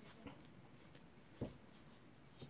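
Near silence, with one soft, low thump a little past halfway as potting soil is scooped and spooned onto a strip of underlay.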